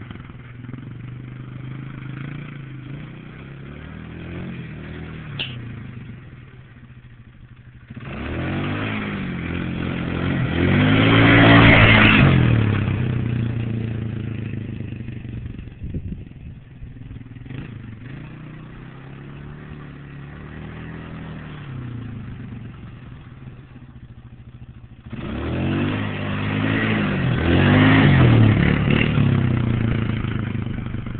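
Polaris Scrambler ATV engine being ridden hard: twice it comes in loud and accelerating, the pitch climbing and then dropping as the quad passes, with quieter running in between as it rides farther off.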